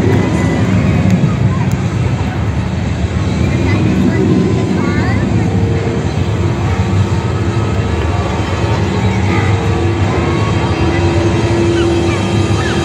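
Heavy engine of the Transaurus dinosaur machine running steadily, its pitch lifting briefly a few times, with crowd voices behind it.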